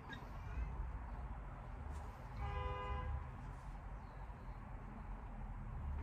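A single short vehicle-horn toot, under a second long, about two and a half seconds in, over a low background rumble.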